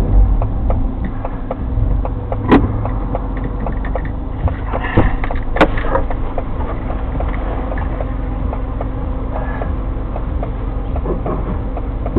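Car interior noise, heard from the dashcam inside the cabin: a steady low rumble of the car with a constant hum and a regular light ticking. Two sharper knocks come about two and a half and five and a half seconds in.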